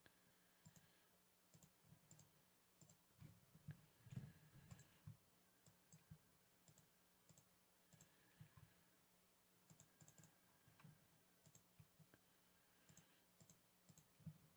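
Near silence broken by faint, irregular clicks of a computer mouse and keyboard, a few slightly louder around four seconds in.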